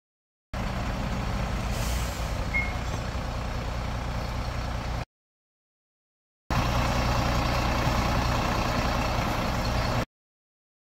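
Fire engine's diesel engine idling steadily, heard in two stretches with about a second and a half of silence between them.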